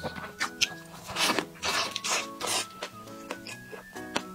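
Close-up eating sounds: a bite into a soft hamburger bun, then wet chewing in several noisy bursts, loudest a little after a second in. Background music plays under it.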